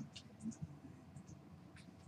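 Quiet room with a low steady hum and a few faint, scattered clicks and light taps.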